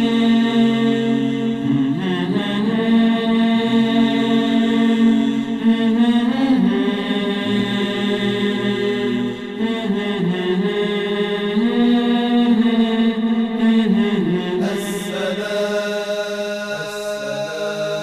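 Background vocal music: a voice chanting a slow melody in long-held notes.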